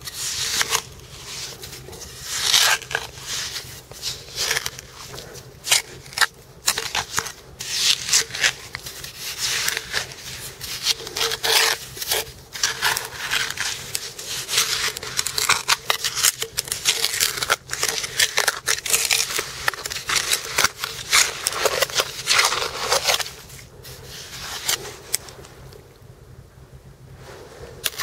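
Small hand trowel scraping and digging into gritty beach clay and sand, a busy run of irregular scrapes and crunches that eases off over the last couple of seconds.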